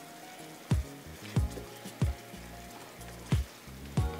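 Background music with a steady beat, over the faint sizzle of bananas simmering in a butter and rum caramel sauce in a nonstick pan.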